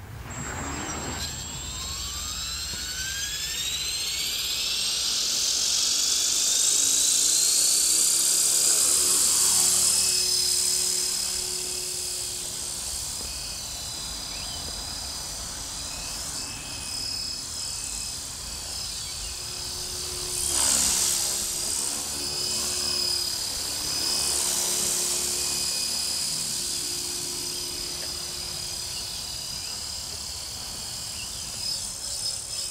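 E-flite Blade 400 electric RC helicopter spooling up from rest, its brushless motor and rotor whine rising in pitch over the first ten seconds or so, then holding steady as it flies, with a brief louder swell about twenty seconds in.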